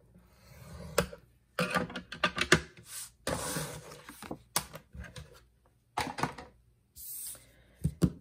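A stylus scoring tool is drawn along a groove of a plastic scoring board through cardstock, scraping, followed by a series of sharp clicks and taps as the scored card is handled.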